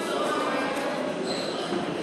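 Steady hubbub of indistinct background voices in a boxing gym during sparring.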